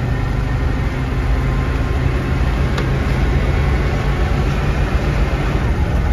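Old motorhome's engine pulling in second gear of its three-speed transmission before the shift into third, a steady low drone heard from inside the cab with road and wind noise.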